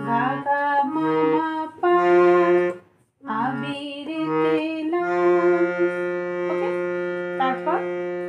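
Harmonium playing a slow melody note by note, its reedy tones sustained with a lower note sounding beneath; the line breaks off briefly about three seconds in, then settles on one long held note for the last three seconds.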